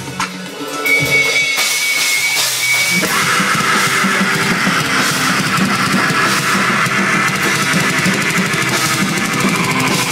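Live metal band playing loud through amplifiers, with distorted electric guitar and a drum kit. A thin, sparse opening with a steady high held tone gives way to the full band crashing in about three seconds in.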